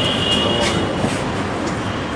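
Loud steady street noise with a high-pitched squeal during the first second.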